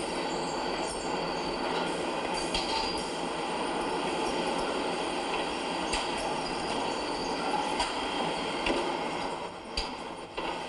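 Automated brick-factory machinery running with a steady, dense mechanical clatter, with a few sharp knocks.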